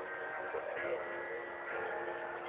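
A choir singing, with notes held steadily.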